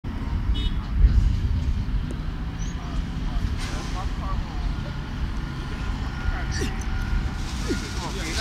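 Steady low outdoor rumble with faint distant voices.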